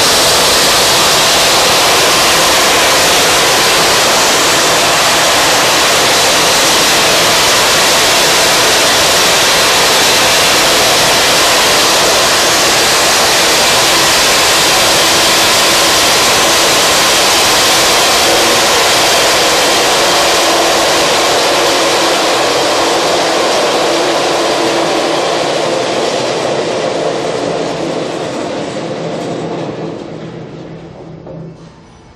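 Fitzmill Model DKAS012 stainless steel hammer mill running loud and steady as its fixed knife/impact blades grind dog food, then fading away over the last several seconds.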